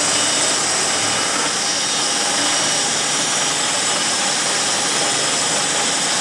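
Steady hiss and rumble of running workshop machinery, with no blows struck, while a key driver machine's head is lined up against a wedge key.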